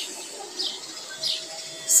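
Small birds chirping in the background: a few short, high chirps spread through the moment.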